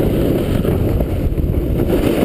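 Wind rushing over an action camera's microphone as it moves downhill at speed on a ski run: a loud, steady low rumble with no pauses.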